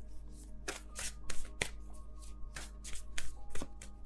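Tarot cards being shuffled by hand, giving a run of irregular crisp flicks and slaps of card stock, over soft background music.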